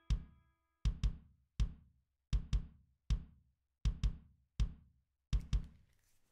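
A repeating knocking rhythm: a quick double knock, then a single knock, the pattern coming round about every one and a half seconds, with dead quiet between the strikes. In the first second the last guitar chord rings out and fades under the first knocks.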